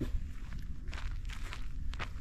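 Footsteps of someone walking along a dry dirt-and-grass footpath, a few separate steps over a steady low rumble of wind on the microphone.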